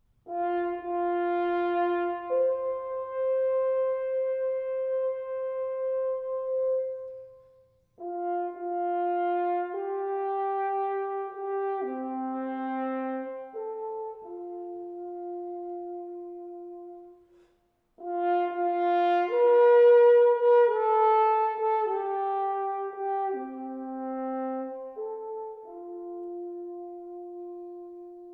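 Solo French horn playing an unaccompanied melody in three phrases, with short breaks between them.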